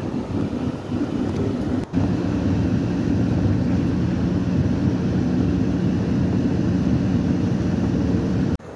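Engine and road noise inside a moving vehicle: a steady low drone, broken by a brief dip about two seconds in.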